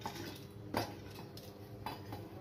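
Hard whole spices picked from and dropped onto stainless steel, making three light metallic clinks about a second apart.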